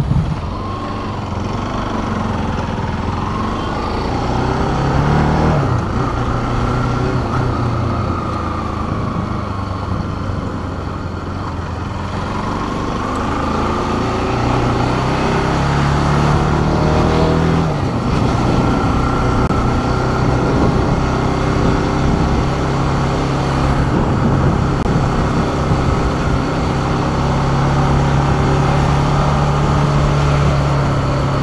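Motorcycle engine running as the bike is ridden at low speed, its pitch stepping up and down a few times with throttle and gear changes.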